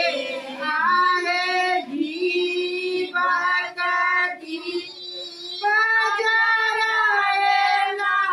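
Women singing a traditional Maithili kobar geet (wedding song) without instruments, in long held, sliding notes. The singing dips in the middle and swells again about six seconds in.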